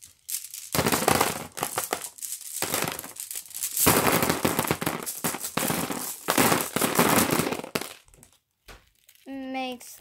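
Glass marbles poured from a mesh bag into a plastic tub of other marbles: a dense rattling clatter of glass on glass and on plastic. There is a short break about two and a half seconds in, and the clatter stops about eight seconds in.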